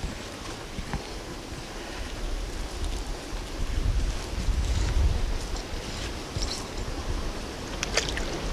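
Wind buffeting the microphone outdoors, a low rumble that swells and eases, with a few faint ticks.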